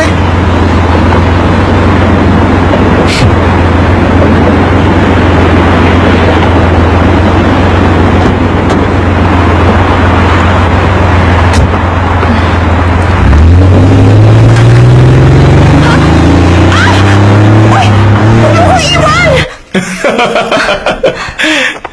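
Steady road traffic noise with a low hum. About thirteen seconds in, a Porsche 911 Targa 4S's flat-six engine starts to pull away, its note climbing in pitch as it accelerates, then it cuts off suddenly near the end.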